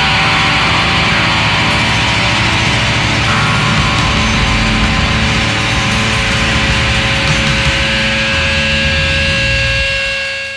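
Live loud rock-and-roll band of electric guitar, bass and drums playing an instrumental stretch with no vocals, a dense, steady, distorted wall of sound. A couple of steady held tones come through near the end.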